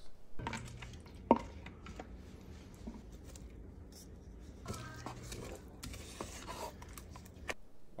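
Quiet kitchen handling sounds: a spatula scraping the minced shrimp mixture out of a food processor bowl into a pot, and sliced green onions tipped in from a small bowl, with one sharp clack about a second in, over a low steady hum.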